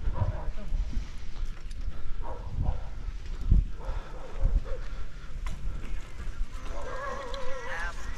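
Wind buffeting the microphone and the low rumble of a mountain bike rolling over a rough dirt track, in irregular gusts, with a voice calling briefly near the end.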